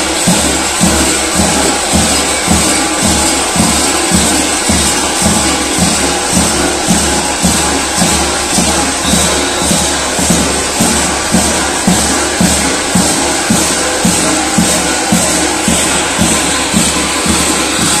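Kukeri bells on the dancers' belts clanging together continuously as they dance, over a steady, even beat from a large tapan drum.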